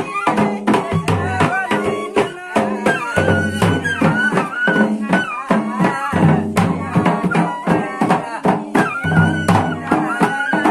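Traditional folk music: a steady drum beat under a wavering melody line, with low held notes that come and go.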